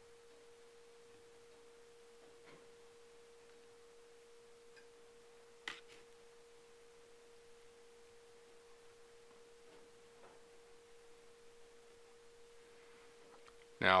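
A faint, steady hum at a single pitch, with one soft click about six seconds in.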